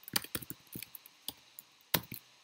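Typing on a computer keyboard: a string of about nine irregular keystroke clicks, the loudest one near the end.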